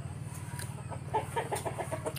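A bird clucking in a quick run of short notes, about six a second, starting about halfway in, over a steady low hum.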